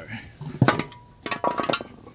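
Steel truck brake shoes clinking and clanking as they are turned over and set down on pavement: a sharp ringing clank about half a second in, then a quick cluster of metal clinks near the end.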